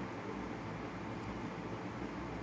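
Steady background noise: a low hum with an even hiss over it, unchanging throughout.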